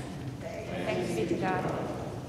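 A congregation speaking the set reply to the reading, "Thanks be to God," many voices together in unison, blended and fainter than the lone reader's voice just before.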